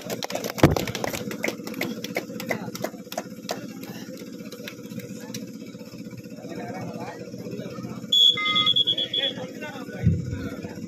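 A shrill whistle blown in a short trill for about a second near the end, over a background of crowd voices. Sharp clicks and a thump come early on.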